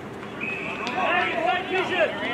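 A short, steady umpire's whistle blast about half a second in, followed by high-pitched shouting from players and spectators on the football ground.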